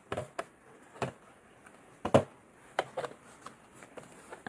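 Paper planner inserts being handled and fitted onto a metal ring binder mechanism: a few light, separate clicks and taps with faint paper rustle between them, the loudest click about two seconds in.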